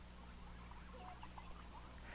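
Faint, scattered high chirps of small animals over a low, steady hum.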